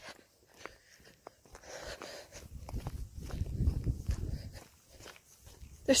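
Footsteps on a gravelly asphalt path, a series of light separate steps, with a low rumble loudest about three to four seconds in.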